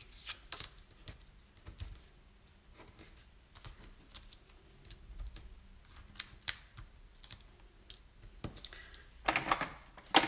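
Scattered light clicks and taps from handling small cardstock pieces and a sheet of foam adhesive dimensionals, with a louder cluster of clicks near the end.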